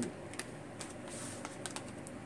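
Tarot cards being handled and one drawn from the deck: a few light clicks of the cards against each other and the long fingernails, with a brief soft slide about a second in.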